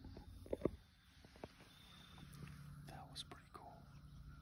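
Hushed whispering between two people, with two or three short sharp knocks of handling noise about half a second in.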